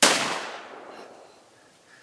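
A single 12-gauge shotgun shot at the very start, its report dying away over about a second and a half.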